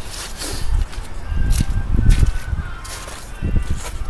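Footsteps on wet ground with low wind and handling rumble on a handheld microphone, plus a faint steady high tone lasting about a second and a half in the middle.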